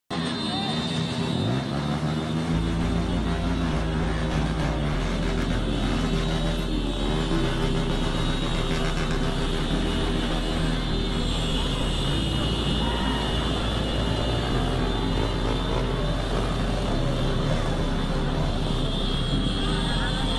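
A convoy of many motorcycles and scooters riding past, engines revving with wavering pitch, mixed with voices and music with a steady bass.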